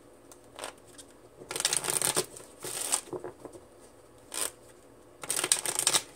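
A deck of tarot cards being shuffled by hand in four short bursts with quiet pauses between them.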